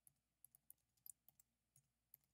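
Faint computer keyboard keystrokes: about eight soft, separate key presses as a word is typed.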